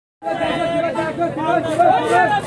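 Several people talking at once, their voices overlapping in a busy chatter.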